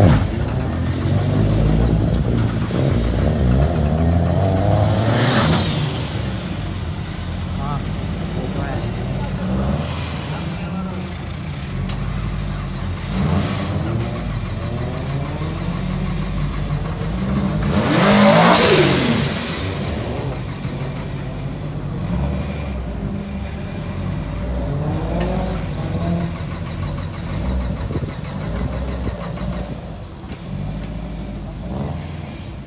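Modified drift cars' engines running in the yard and revved hard several times. The pitch climbs and drops quickly on each rev, loudest about five seconds in and again about eighteen seconds in.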